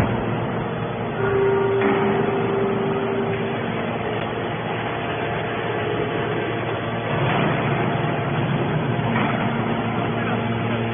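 Y81T-135T hydraulic metal baler running with a steady mechanical noise, and a held whine from about one to nearly four seconds in. The noise grows louder about two seconds in and again around seven seconds in.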